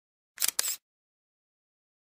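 A camera-shutter sound effect: one quick double click, under half a second long, about half a second in, used as the transition to the next picture.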